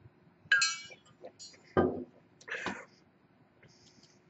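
A metal drinking tumbler clinks with a short ring about half a second in, followed by a couple of soft drinking sounds, a swallow and a breath.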